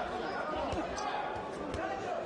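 A few dull thuds from the boxers in the ring, the strongest about a second apart, over the steady chatter of voices filling a large hall.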